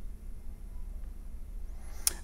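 Quiet background: a steady low hum with a faint hiss and no distinct sounds.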